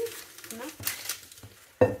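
Light rustles and taps of baking paper being smoothed flat on a countertop, with a short, loud knock near the end as a metal cup is set down on it.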